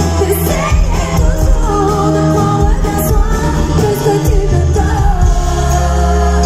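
A woman singing live into a handheld microphone over a band with electric guitars and a steady bass line, heard from among the audience.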